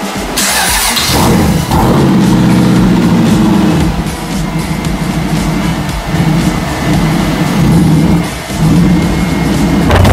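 Custom motorcycle's flathead V8 engine starting up about a second in and being revved, its note rising and falling several times.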